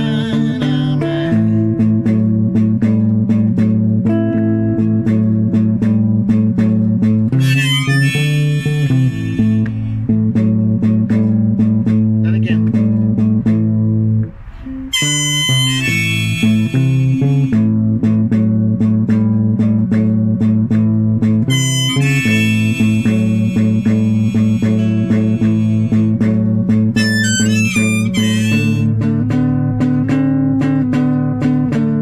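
Guitar music: plucked guitar notes over sustained low notes, with bright high melodic phrases that waver in pitch coming in several times, and a brief drop in loudness about halfway through.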